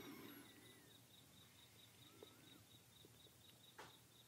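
Near silence in a pause between spoken sentences: faint ambience with a few faint, short gliding chirps, one about two seconds in, over a faint, even high pulsing.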